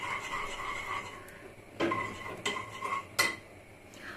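Dishes and cutlery being handled, with three sharp clinks about two, two and a half and three seconds in, over a faint steady tone.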